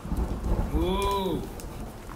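Thunder rumbling low with rain falling, and a short rising-then-falling voice sound about a second in.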